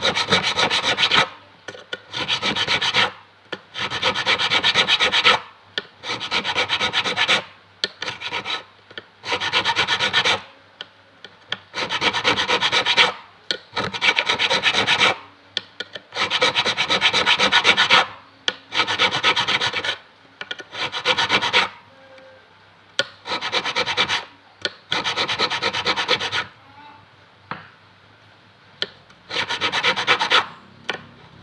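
A fret crowning file rasping back and forth across a metal fret on an acoustic guitar fretboard, in quick strokes grouped into runs of a second or two with short pauses between. The runs thin out to light scraping a few seconds before the end, then one more run.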